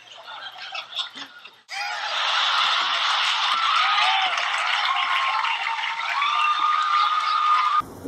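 A man laughing quietly, then about two seconds in a studio audience's laughter and applause starts all at once, loud and steady with some whoops, and stops abruptly near the end.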